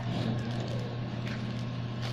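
Soft crinkling of a clear plastic zip-lock bag being pressed shut, over a steady low hum.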